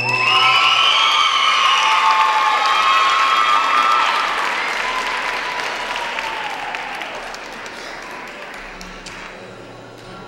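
Audience applauding and cheering, with high whoops in the first few seconds. The applause then dies away gradually.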